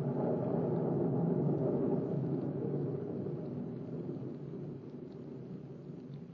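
A long, low roll of thunder, a radio-drama sound effect, swelling over the first second or so and then slowly dying away.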